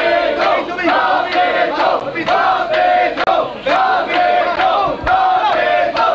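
Many voices shouting a chant together, short syllables repeated in a steady rhythm, with sharp strikes keeping time about twice a second.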